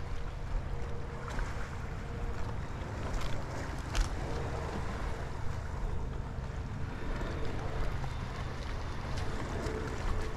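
Wind buffeting the microphone over the wash of the sea, with a faint steady hum in the background and a single sharp click about four seconds in.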